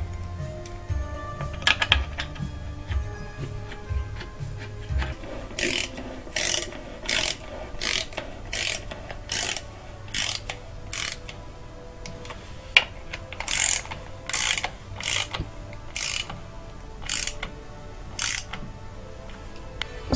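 Hand socket ratchet clicking in two runs of short, even strokes, about one and a half a second, snugging down the valve cover bolts on a Subaru EJ253 cylinder head before they are torqued.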